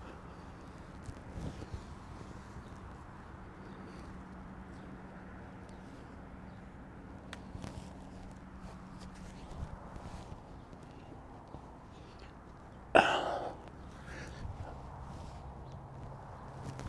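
Faint shuffling and rustling as a horse's hindquarters are rocked by hand, with one short loud snort from the horse about thirteen seconds in.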